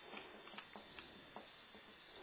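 Faint scratching of a marker tip on a whiteboard as letters are written in short strokes, with a brief high squeak of the marker near the start.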